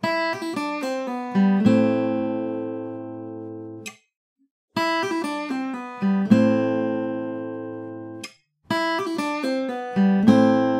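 Eastman AC-508 acoustic guitar played with hybrid picking: a quick fill of picked notes with hammer-ons and pull-offs that settles into notes left ringing. The phrase is played three times, and each time the ringing is cut off suddenly.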